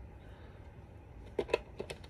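A few quick, sharp clicks of a small plastic toy figure and its packaging being handled, about a second and a half in.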